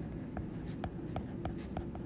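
Stylus tip tapping and scratching on a tablet surface while handwriting a short phrase: a run of quick, light taps, several a second.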